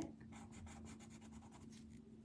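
Faint scratching of a coloured pencil on a paper tile in quick, short shading strokes.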